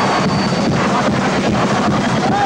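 Carnival chirigota band and audience during a stage dance: a steady drum beat, about four strokes a second, under a dense, loud wash of crowd noise.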